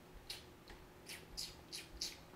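Faint, short rustles, about five in two seconds, from children's hands handling Play-Doh and small plastic toys on a tabletop.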